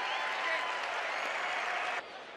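Baseball stadium crowd cheering and applauding, with scattered shouts, swelling and then cutting off suddenly at the end.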